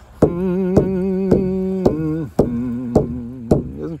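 A man hums long, wavering notes over a steady beat on a frame hand drum struck with a padded beater, about two strokes a second. One note is held for nearly two seconds before the tune steps down.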